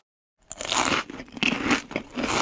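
Close-up crunchy chewing and biting of food, starting about half a second in after a moment of dead silence and going on irregularly.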